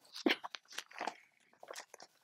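Glossy magazine pages being handled, with a run of short, irregular crinkles and rustles.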